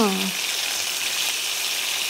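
Cauliflower florets frying in hot oil in a kadai: a steady, even sizzle.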